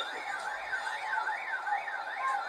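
An electronic alarm warbling rapidly up and down in pitch, about four sweeps a second, without a break.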